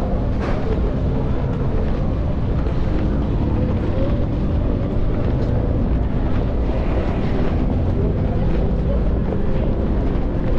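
Busy city street ambience: a steady traffic rumble mixed with a low rumble of wind on the microphone as the recordist walks.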